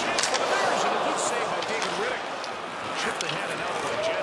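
Ice hockey game sound: steady arena crowd noise with a few sharp clacks of sticks and puck on the ice.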